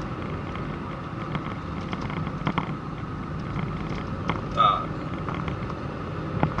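Steady low rumble of a vehicle driving along a city road: engine, tyre and wind noise. A brief voice fragment breaks in near the end.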